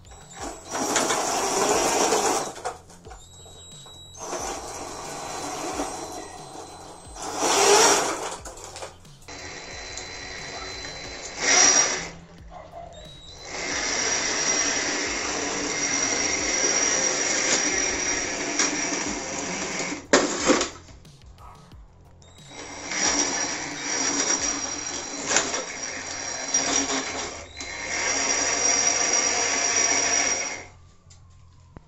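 Electric gear motors driving homemade RC tank tracks in a series of runs, each a few seconds long, starting and stopping sharply, with a steady high whine.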